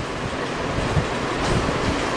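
Steady rumbling background noise with no speech, strongest in the low range, with a couple of soft low thumps about a second in and again near the end.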